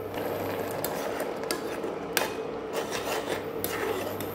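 Steel spoon stirring grated radish simmering in milk in a metal pan, scraping across the pan's bottom with several sharp clinks against its sides.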